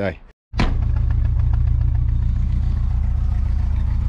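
Mk2 Volkswagen Golf GTI engine idling, a steady low drone that comes in abruptly about half a second in. The owner still feels a little judder after moving the camshaft timing, and thinks it could just be the ignition timing.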